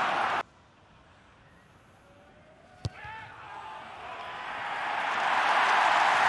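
Stadium crowd noise cuts off about half a second in to a hush, and a single sharp thud of a boot striking a rugby ball on a place-kicked penalty comes just before the midpoint. A crowd cheer then swells steadily as the kick goes over.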